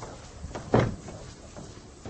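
Knocks and short scrapes of someone writing on a lecture-room board, the loudest stroke about three-quarters of a second in.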